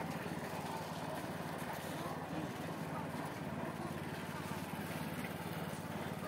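Busy street ambience: a steady low engine hum of passing traffic under faint background chatter of people.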